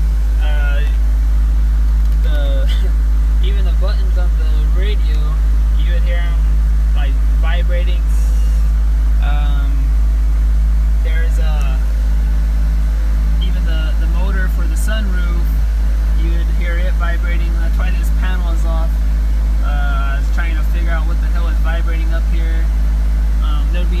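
Ford SVT Focus's four-cylinder engine idling, heard from inside the cabin as a steady low hum. It is running on a freshly fitted Steeda polyurethane rear engine (torque) mount, which the owner says makes it feel way smoother, without the random rattles in the roof panel and sunroof cover that the worn factory mount caused.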